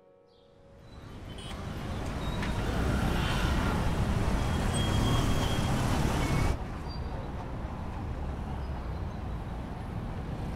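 Road traffic noise fading in, a steady rumble of passing vehicles. It cuts off abruptly about two-thirds of the way through to the quieter, steady road noise of a moving car heard from inside.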